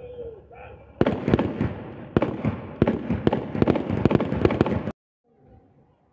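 A police platoon firing blank rounds from raised rifles in a ceremonial feu de joie. A rapid, irregular crackle of shots starts about a second in and cuts off suddenly near five seconds.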